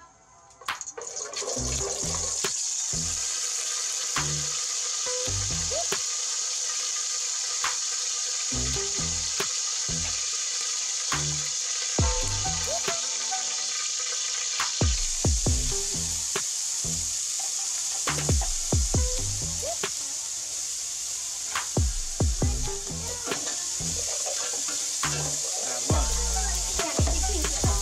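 Liquid, most likely cooking oil, sizzling steadily in a hot aluminium pot on a gas stove. The sizzle grows louder about halfway through as a yellow-green paste goes in. Background music with a steady beat plays throughout.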